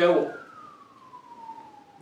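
A siren wailing: one faint tone sliding slowly down in pitch.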